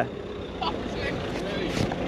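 Delivery van engine running steadily as the van pulls away close by, with faint voices in the background.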